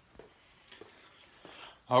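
Faint sounds of a person getting up and moving about: a few soft knocks and light rustling over a quiet room.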